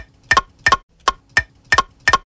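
Hanging wooden bars of different sizes struck one after another, about three knocks a second, each giving a short hollow ringing note at a different pitch.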